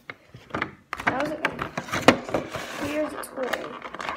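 Stiff clear plastic toy packaging being handled, giving crackles and sharp clicks, the loudest about two seconds in.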